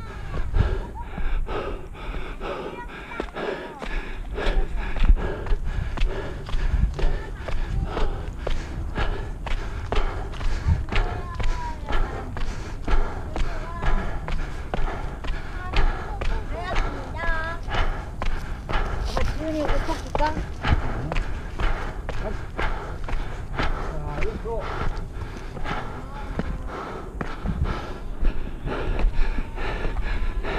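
Footsteps thudding steadily up wooden railway-tie stairs, with low rumble on the body-worn camera's microphone. Voices of other hikers come through, mostly around the middle.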